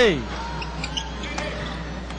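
Arena crowd noise during live basketball play, with a few short knocks from the ball and play on the court.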